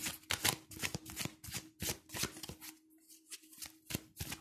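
A deck of tarot cards being shuffled by hand, the cards sliding and slapping together about three times a second, with a short pause near the end. A faint steady hum runs underneath.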